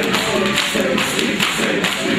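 A fast, even beat, about four strikes a second, under voices singing or chanting, in the manner of a mourners' chant.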